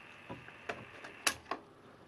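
A few short mechanical clicks from the piano-key transport controls and mechanism of a 1966 AIWA TP-712 reel-to-reel deck being handled, the sharpest about a second and a quarter in. A faint steady high whine fades out at about the same time.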